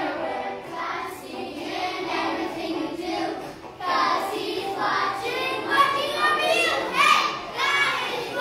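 A group of children singing together in a large church hall.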